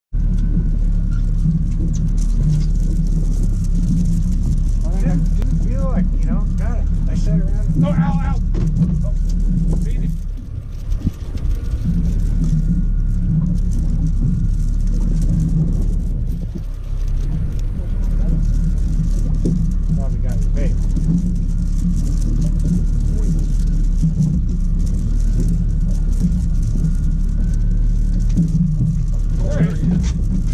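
Boat engine running steadily, a loud low drone that dips briefly twice, with indistinct voices now and then.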